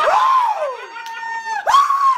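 A small group of people screaming and cheering in excitement: long, high held cries, one sliding down in pitch early on, then another short high scream near the end.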